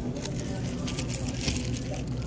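Steady low hum of supermarket background noise, with a few faint soft rustles of handling close to the microphone.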